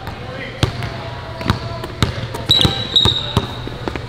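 Basketball dribbled on a hardwood gym floor, about two bounces a second. In the second half, high squeaks like sneaker soles on the hardwood.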